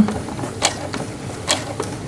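Sewing machine stitching slowly, a few irregular mechanical clicks as the fabric is guided around a curve.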